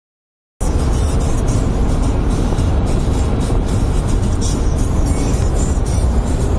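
Cabin noise of a Renault Kangoo 1.5 dCi four-cylinder turbodiesel at motorway speed near 200 km/h: a loud, steady mix of wind, road rumble and engine drone, starting about half a second in. Music plays under it.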